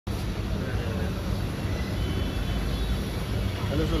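Steady low rumble of vehicle and street noise, with people's voices starting near the end.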